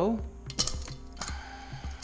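Valve spring compressor being let off a Mazda Miata BP 1.8 cylinder head: a few sharp metal clicks, the loudest about half a second in, as the spring and retainer come up and the keepers seat on the valve stem.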